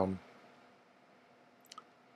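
A faint, short double click near the end: an electric egg cooker's power plug being pushed into the wall socket.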